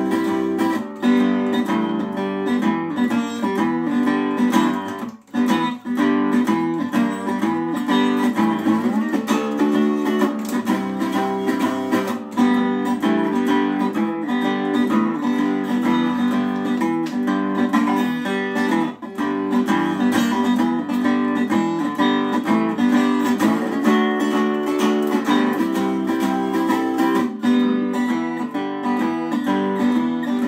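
Solo resonator guitar playing a steady, repeating picked pattern, the instrumental opening of a song.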